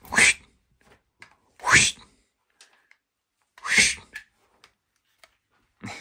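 Toy Indiana Jones whip being tested: three short whooshing cracks, each falling in pitch, about two seconds apart.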